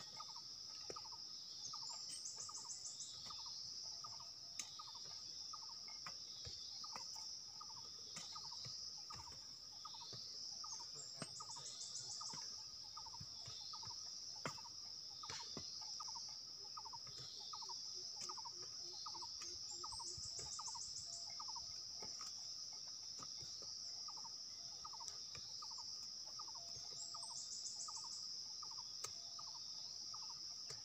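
Insects shrilling steadily at a high pitch, with a louder pulsed insect call coming back about every eight to nine seconds. Under it runs a series of short lower chirps about twice a second, and there are a few faint knocks.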